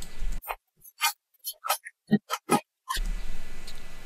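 The transient layer of an acoustic guitar track, played back on its own after spectral separation. It is a string of about a dozen short, clicky pick and strum attacks with dead silence between them, stripped of the guitar's sustained tone, lasting about two and a half seconds.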